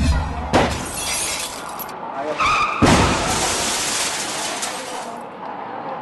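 Produced transition sound effect under a station-ident graphic: noisy whooshes, with a sudden hit just before three seconds in, cutting off abruptly about a second before the end.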